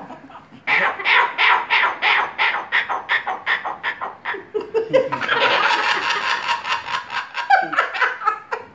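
Laughter in quick ha-ha pulses, about three a second, for some four seconds. Then a long harsh screech of about two and a half seconds from a sulphur-crested cockatoo.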